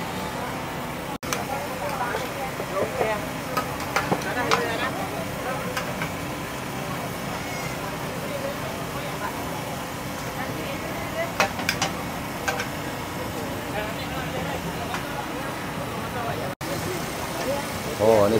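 Busy outdoor food-market ambience: a mix of background voices from shoppers and vendors, occasional clinks and clatter, and a steady low hum underneath.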